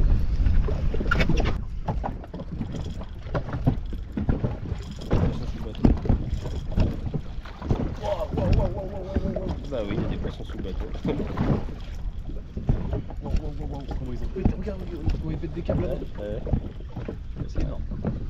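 Wind buffeting the microphone and small waves slapping against the hull of an inflatable boat adrift at sea, with a low rumble throughout; low voices are heard now and then.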